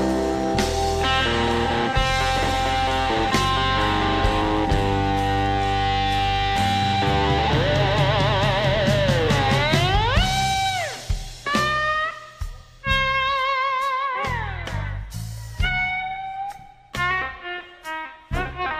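Live blues electric slide guitar solo over the band, with wide vibrato and gliding notes. About ten seconds in the band drops out and the slide guitar plays alone in short, separated phrases.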